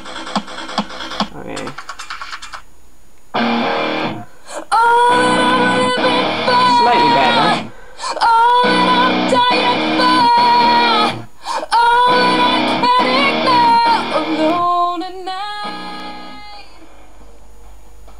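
Music played from a docked iPod Touch through the Technika Viewbox's small built-in speakers, in phrases of held melody with short breaks. Near the end the volume is turned down in steps and the music drops to a much quieter level.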